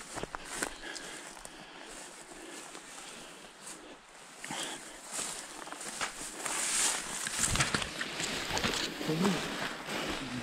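Long grass and toetoe stems brushing and crackling against clothing and the camera, with footsteps, as someone walks through tall grass. The rustle grows louder from about six seconds in.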